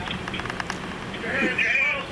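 Distant men's voices calling out over a steady low background hum, the calling strongest in the second half.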